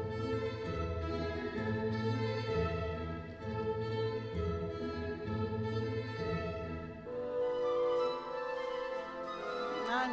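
Orchestral music with bowed strings, the skater's short-program music, moving in sustained held notes. The low bass drops away about seven seconds in, leaving a higher melody line.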